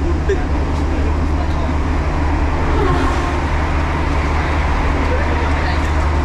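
Steady low rumble and hum of a motor vehicle, unchanging throughout, with faint voices talking underneath.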